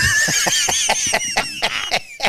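A man and a woman laughing hard together, led by a high-pitched laugh in quick pulses that slowly falls in pitch.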